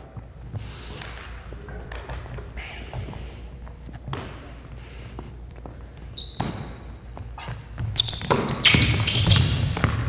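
A basketball bouncing on a hardwood gym floor, a few separate sharp thuds with a short echo after each, and sneakers squeaking briefly twice. The noise grows louder in the last two seconds.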